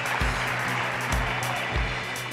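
Studio audience applauding over background music that has a steady beat of about two thumps a second.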